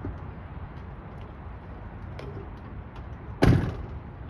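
A box truck's cab door slammed shut once, a sharp bang about three and a half seconds in that dies away quickly, over a low steady rumble.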